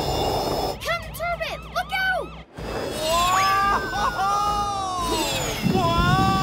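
Cartoon soundtrack mix. A short jet hiss is followed by a run of quick rising-and-falling pitched sounds, then a brief cut-out, then long gliding tones over background music.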